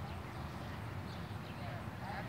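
Low, uneven rumble of wind on the microphone, with faint distant voices of a group of young people playing on a lawn.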